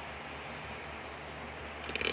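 Steady room tone, a low hiss with a faint hum. Near the end, sharp clicks begin as the phone is picked up and handled.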